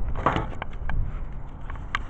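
Handling noise from a camera being picked up and moved by hand, with a low rumble, a brief scuffle about a quarter second in and a few sharp clicks.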